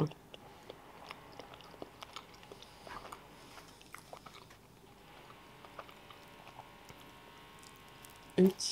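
Close-up chewing of a mouthful of croissant pastry: faint, small mouth clicks scattered irregularly.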